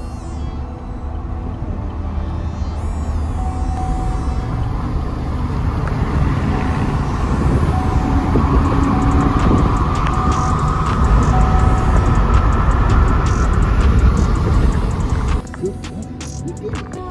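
Wind and road rumble inside a car moving at highway speed, growing louder through the middle, with music playing underneath. It cuts off suddenly near the end.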